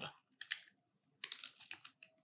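Faint computer keyboard keystrokes: two clicks about half a second in, then a quick run of several more after a second.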